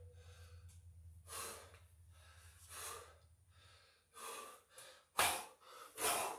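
A man breathing hard from exertion between burpees: deep, noisy breaths about every second and a half, the loudest near the end.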